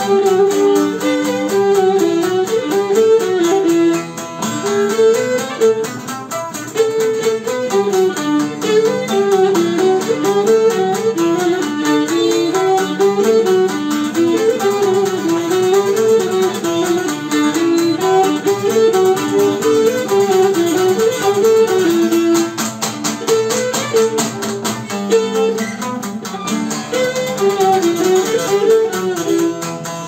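Cretan lyra playing a syrtos dance tune, accompanied by a newly made laouto.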